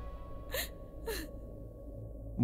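Two short breathy gasps, about half a second apart, each with a slight falling pitch, over faint sustained background music.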